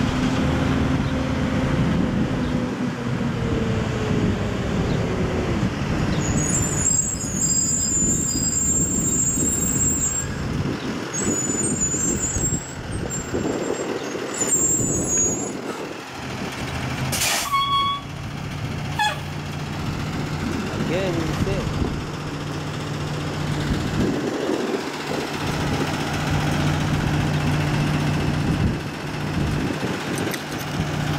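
A flatbed tow truck's diesel engine running as the truck pulls up, with a brief sharp hiss about halfway through, then idling steadily.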